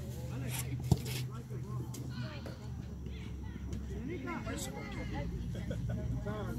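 People chatting and laughing close to the microphone, with one sharp thud about a second in and a steady low hum underneath.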